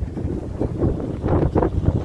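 Wind buffeting the phone's microphone in irregular gusts, a loud low rumble with repeated surges.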